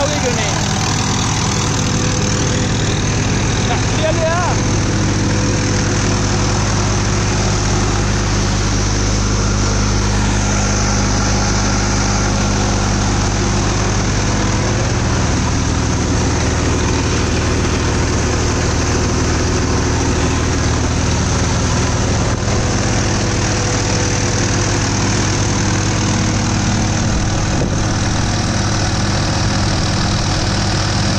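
Swaraj 963 FE tractor's diesel engine running steadily under load, driving a multicrop thresher through its PTO, with the thresher's drum and fan running as crop is fed in. The engine note shifts slightly about halfway through.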